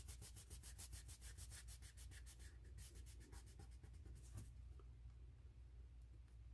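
Fingers rubbing a sticker down onto a sticker board in quick, even strokes, about eight a second. The rubbing is faint and stops about four and a half seconds in.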